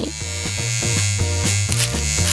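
Electric hair clipper running with a steady buzz as its blades are run over cactus spines.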